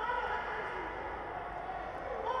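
Faint, echoing sports-hall ambience with a distant voice calling out in long, held tones.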